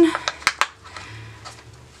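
Thin kraft brown shipping paper crackling as gloved fingers press it into pleats around a candle container. Two sharp crinkles come about half a second in, then faint rustling of the paper.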